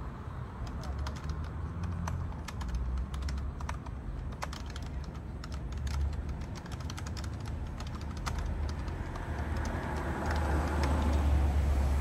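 Typing on a compact Logitech keyboard: quick, irregular plastic key clicks over a low outdoor rumble. In the last few seconds a passing car swells up under the typing.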